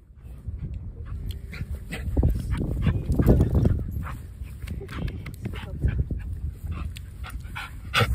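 Dog running about on grass and panting, without barking, over a low rumble that is loudest about three seconds in.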